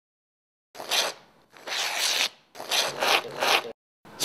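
Whipped-cream dispenser spurting cream in three hissing, sputtering bursts.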